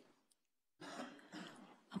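A person clearing their throat into a microphone, two short rough swells starting about a second in, after a moment of silence.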